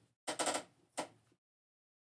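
Two short bursts of rubbing and scraping as chalk paste is worked by hand across a silkscreen stencil, about half a second apart.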